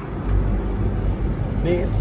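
2022 Chevrolet Corvette Stingray convertible driving with the top down: a steady low rumble from its 6.2-litre V8 mixed with road noise.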